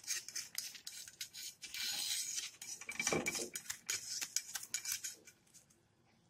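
A spatula scraping and clicking against a pan, working under a thin pancake to loosen it from the pan, in quick rasping strokes that die away near the end.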